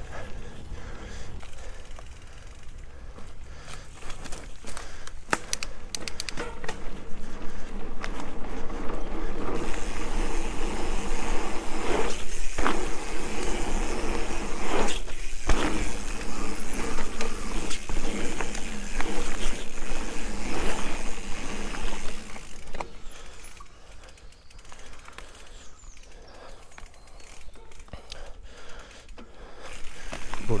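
Mountain bike ridden over a dirt forest trail: tyres rolling on packed earth, with rattles and a few sharp knocks from the bike over bumps. It gets louder and rougher in the middle stretch and eases off near the end.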